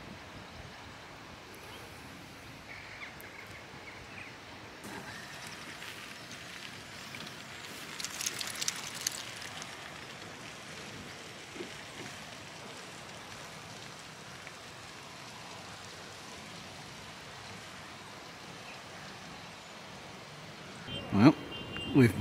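Faint outdoor ambience in open parkland: a steady hiss of wind, with a short louder burst of noise about eight seconds in.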